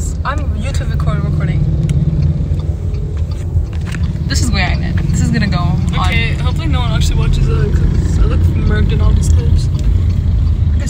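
Steady low rumble of a car driving, heard inside the cabin from the back seat, under talking.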